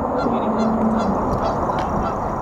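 Geese honking repeatedly over a steady low background rush.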